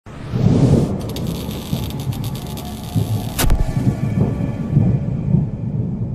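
Cinematic logo-intro sound design: a continuous low, thunder-like rumble with pulsing swells and a sharp crack about three and a half seconds in.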